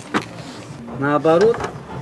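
A man's voice: a short rising-and-falling vocal phrase about a second in, just after a sharp click.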